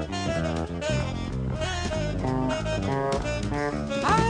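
Live jazz band in an instrumental break: a saxophone plays quick runs of short notes over drum kit and bass.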